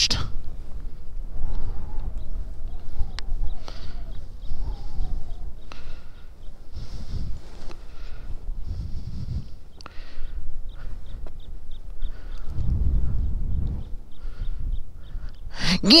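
Wind rushing over the helmet camera's microphone as a paraglider flies, a low rumble that swells and fades in gusts.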